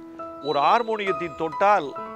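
A man speaking in Tamil over background music of held keyboard notes.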